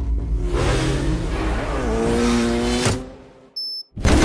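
Film sound effects of cars racing on a highway: engines revving with rising and falling pitch amid tyre noise, cut off sharply about three seconds in. A short high-pitched beep sounds in the near silence just before the end.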